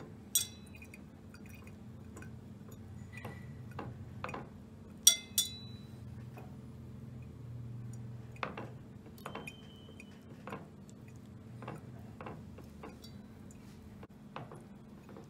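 Wire whisk clinking against a stainless steel bowl as wet curds are scraped out of it: a dozen or so sharp, irregular clinks, the loudest two close together about five seconds in.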